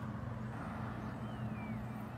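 Steady low hum of a vehicle engine running nearby in street traffic, with a faint high whistle that slides down and then back up about a second in.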